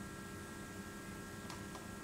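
Quiet, steady electrical hum of room tone, with a faint click about one and a half seconds in.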